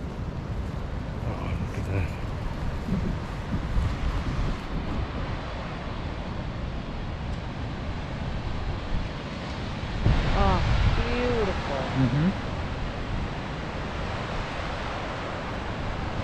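Wind noise on the microphone over the steady wash of ocean surf breaking on the shore below, with a short run of gliding pitched calls about ten seconds in.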